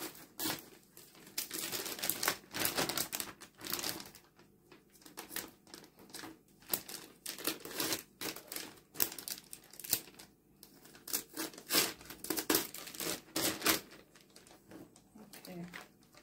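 A thin plastic zip-top storage bag crinkling in irregular bursts as it is handled and cut apart with scissors.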